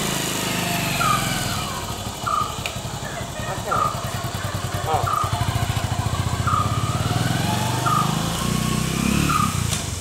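Outdoor background: a steady low engine drone, with a short high chirp repeating about every second and a half, seven times.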